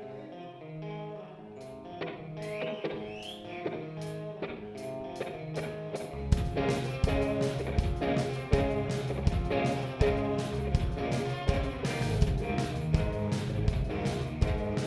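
Live pop-rock band opening a song: an electric guitar plays a picked melody on its own, then bass guitar and drum kit come in about six seconds in with a steady beat and the music gets louder.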